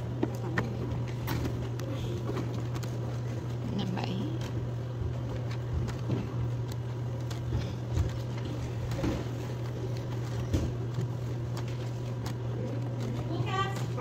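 Bingo hall room sound between number calls: a steady low hum with faint background chatter and a few scattered clicks.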